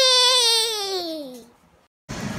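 The end of a short intro jingle: one held, slightly wavering pitched note that slides steadily downward in pitch and fades out about a second and a half in.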